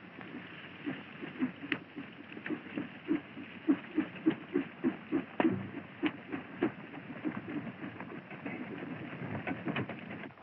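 Hoofbeats of several horses galloping on a dirt track: a quick, irregular drumming of thuds, loudest around the middle.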